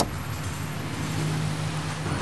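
Street traffic: a road vehicle's engine hum, low and steady, growing stronger in the second half. A short sharp click comes right at the start.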